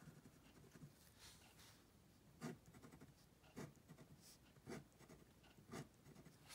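Faint scratching of a pen drawing on paper, small curved lines and ovals, with four short louder strokes about a second apart in the second half.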